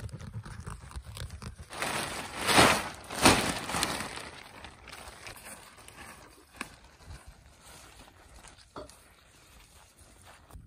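Thin black plastic sheeting crinkling and rustling as it is cut with scissors and gathered up, loudest in two quick rushes about two to four seconds in, then softer handling.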